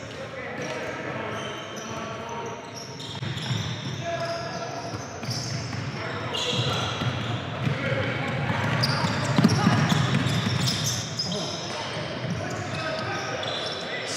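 Gymnasium crowd chatter: several people's voices overlapping, carrying in a large hall, with a basketball bouncing on the hardwood court as the free-throw shooter dribbles.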